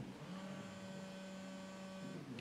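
Faint steady electrical hum: a low buzz with a few thin, higher steady tones above it, setting in just after a spoken word fades near the start.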